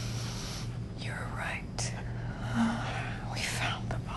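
Whispered, breathy voice sounds from a person shivering with cold, over a steady low hum.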